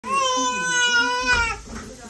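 A five-month-old baby's long, loud protesting yell, held at one steady pitch for about a second and a half and falling away at the end.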